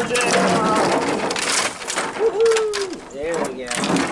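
Dry sticks and branches scraping and crackling as they are shoved across a pickup truck's bed and tailgate and tumble off, a run of many short clattering snaps. A voice calls out now and then over it.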